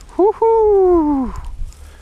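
A vocal cry: a short rising note, then one long call that falls steadily in pitch over about a second.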